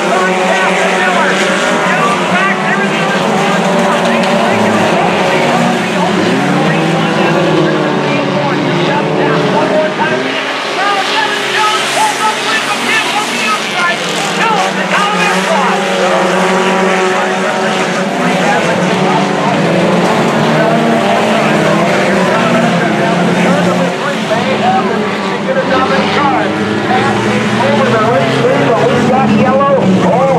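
Several four-cylinder sport compact race cars running in a pack on a dirt oval. Their engines rise and fall in pitch, overlapping, as they rev through the corners and down the straights.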